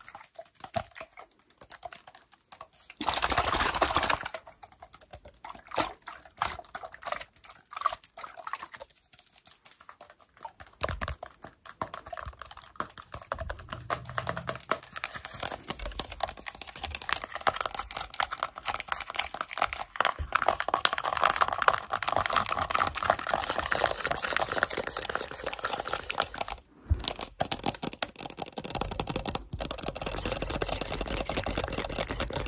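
Fast, irregular ASMR tapping and scratching with fingernails on a clear drinking glass: a rapid run of small clicks, densest and most continuous in the second half. A short, louder rustling burst comes about three seconds in.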